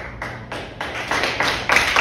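Hand claps from a few people in the room, quick and evenly spaced at about five a second, growing louder.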